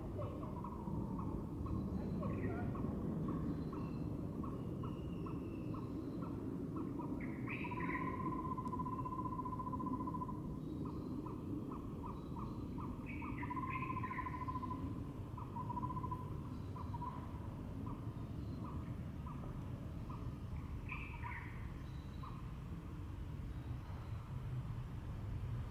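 Birds calling in the background: runs of quick notes and a few drawn-out whistles, with short higher curving notes now and then, over a steady low rumble.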